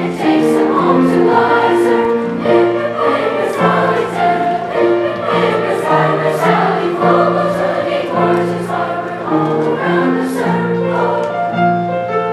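Seventh-grade mixed choir of boys and girls singing in parts, with grand piano accompaniment.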